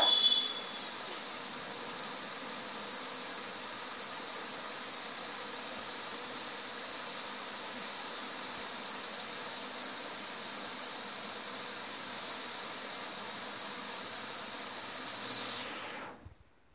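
A steady hiss at an even level, cutting off suddenly near the end.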